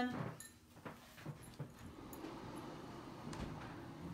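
Faint, scattered clicks and knocks of a camera setup being handled and adjusted, over low room noise.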